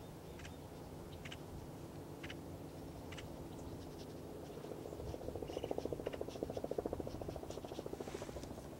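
Pen drawing on a sketchbook page: faint scattered ticks, then from about five seconds in a quick, even run of back-and-forth strokes lasting about three seconds.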